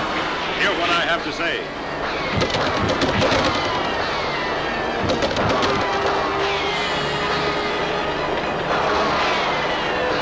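Cartoon soundtrack: orchestral score with voices calling out, and a quick flurry of sharp cracks between about two and three and a half seconds in, with a couple more about five seconds in.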